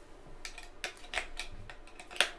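Several short, sharp clicks and knocks of a guitar cable's jack plug being handled and pushed into an electric guitar's output socket.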